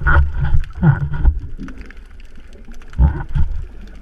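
Snorkeler's breathing through a snorkel, heard muffled through an underwater camera housing along with water rushing past it. It comes in short bursts of rushing noise: at the start, about a second in, and again about three seconds in.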